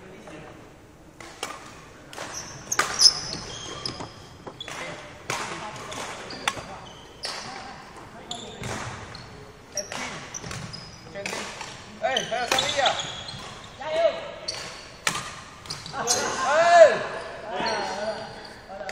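Badminton rally in a sports hall: a string of sharp racket hits on the shuttlecock and footfalls, with short squeaks of court shoes on the wooden floor.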